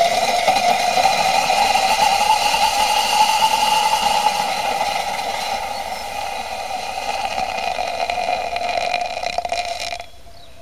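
Gummy bear burning violently in molten potassium chlorate inside a borosilicate test tube: a loud rushing of gas and flame from the tube carrying a steady pitched note that sags slightly in pitch. It cuts off near the end as the reaction burns out.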